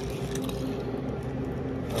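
Faint rustles and a few light clicks of things being handled, over a steady low background hum.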